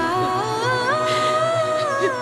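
Background score: a slow wordless hummed or sung melody, one voice stepping up through a few notes, holding, then falling near the end.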